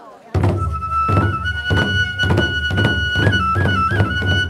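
Hōin kagura accompaniment starting about a third of a second in: two large barrel drums (taiko) struck in a quick, even rhythm, about four to five strokes a second. A bamboo transverse flute (fue) comes in about a second in on a long, steady high note.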